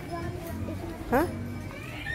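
People talking, with a loud, short, rising 'hah?' from one voice about a second in.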